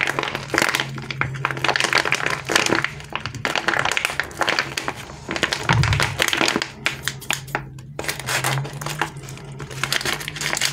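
Clear plastic packaging crinkling and crackling in irregular bursts as a foam squishy is squeezed and worked inside its bag.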